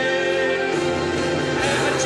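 Recorded musical-theatre duet with orchestral accompaniment, played back over a sound system; the notes are long and held, and the harmony shifts partway through.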